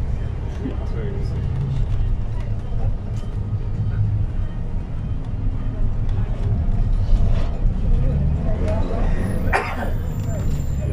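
Interior of a 2022 Iveco minibus with a Hi-Matic automatic gearbox on the move: a steady low engine and road drone, with passengers' voices faint at times. A sharp knock or rattle comes near the end.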